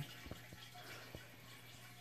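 Quiet room tone: a faint, steady low hum and hiss, with two faint soft ticks, about a second apart, as a soft-plastic lure is turned in the fingers.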